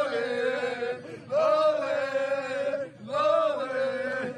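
A small group of young men singing a football supporters' chant together in three long, held phrases.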